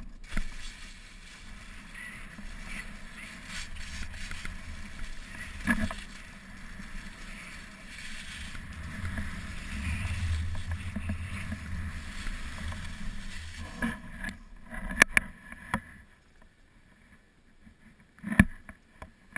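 Skis sliding and carving on packed snow, a steady scraping hiss, with a few sharp knocks a few seconds before the end.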